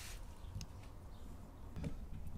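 Quiet background rumble with two faint, short clicks, about half a second in and near the end.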